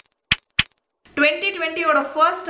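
Sound effects of an animated subscribe-button graphic: three quick clicks about a third of a second apart, with a thin high ringing tone. A woman starts talking a little after a second in.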